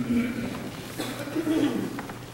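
Low, indistinct voices of people greeting one another as they share the peace, in two short murmurs: one at the start and one about one and a half seconds in.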